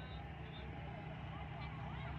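Faint outdoor background: a low, steady rumble with a few faint, short chirps.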